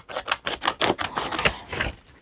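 A sheet of paper being torn by hand along its fold into two pieces: a quick run of short ripping and rustling sounds that thins out near the end.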